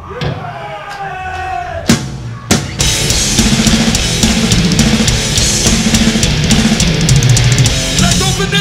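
Death metal band starting a song live. A held, wavering tone for about two seconds, then two sharp drum hits, and about three seconds in the full band kicks in with very fast drumming.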